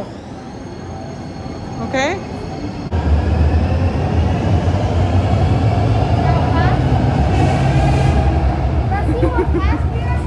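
Calgary C-Train light-rail train moving off along the platform: a strong, steady rumble starts about three seconds in, and a motor whine rises slowly in pitch as the train picks up speed.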